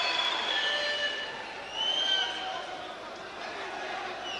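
Boxing-arena crowd noise: a steady murmur of many voices, with a brief louder high call about two seconds in.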